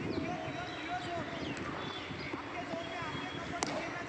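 Several voices chattering, and one sharp crack of a cricket bat striking the ball about three and a half seconds in.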